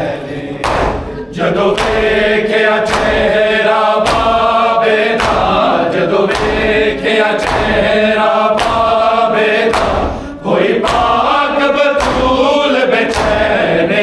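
Men's voices chanting a Shia noha lament together, with a strong unison slap from hands striking bare chests (matam) about once a second, keeping the beat.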